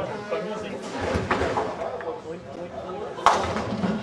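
Ninepin bowling ball striking the pins with one sharp clatter about three seconds in, over voices chattering in the hall.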